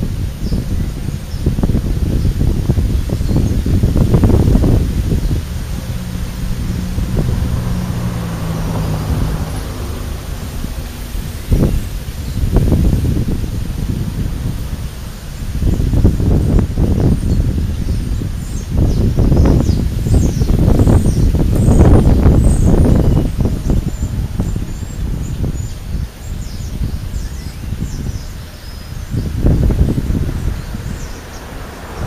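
Wind buffeting the microphone in gusts, a low rumble that swells and fades repeatedly, with a low hum running briefly about a quarter of the way in and faint high chirps in the second half.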